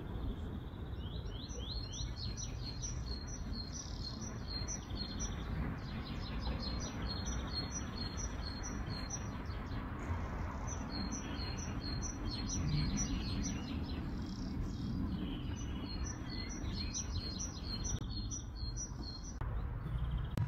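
Songbirds singing: short phrases of quick, high chirps every few seconds, over a steady low background rumble.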